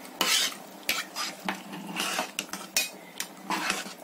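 Perforated metal spoon stirring a watery tomato mixture in a pressure cooker pot, scraping and knocking against the pot in irregular strokes.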